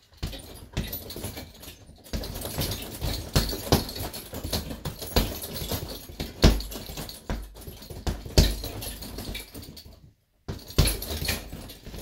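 Bare-knuckle punches landing on a hanging heavy bag in quick, uneven flurries, each hit thudding and setting the chain and swivel at the top jingling. The fitting at the top is loose, so it jingles more than usual. The flurry breaks off for a moment just after ten seconds in and then resumes.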